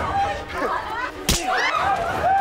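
A single sharp, loud punch hit a little over a second in, the blow of a stage fight, with shouts and gasps from the people around it.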